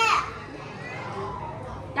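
Low murmur of several people and children talking in a room, after a caller's voice trails off at the very start.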